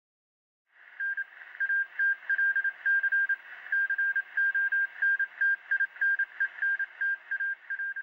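A radio signal sound effect: one high beep tone keyed on and off in short and long pulses, like Morse code, over a hiss of radio static. It starts about a second in.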